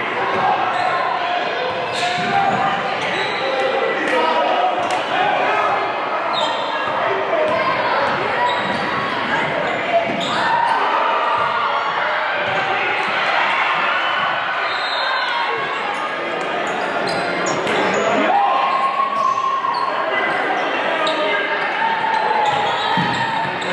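Basketball dribbled on a hardwood gym floor during a game, with sharp knocks now and then (one louder about ten seconds in). Spectators' and players' voices carry on throughout, echoing in the large hall.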